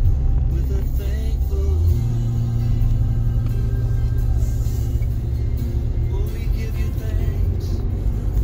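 Steady low rumble inside a moving car's cabin from engine and road, with music playing over it.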